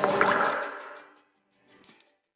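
Watery whoosh sound effect with a shimmer for a falling teardrop turning into a glowing pearl: it swells in at the start, peaks almost at once and fades out by about a second in, with a short softer sound near the end.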